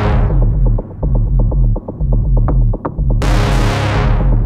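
Progressive house / techno from a DJ mix: a rolling, pulsing bassline under a steady beat. A bright noise sweep fades out at the start and a new one comes in about three seconds in.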